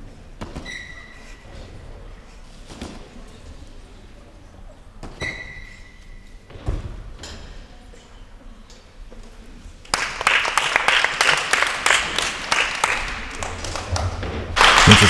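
A gymnast's dismount from the still rings lands on the mats with a single dull thud. About three seconds later spectators break into applause, loud and dense, which runs on to the end. Two brief high squeaks sound in the first half.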